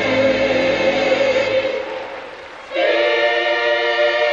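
Gospel choir singing long held chords. The sound fades away about halfway through, then a new held chord comes in sharply near the three-second mark.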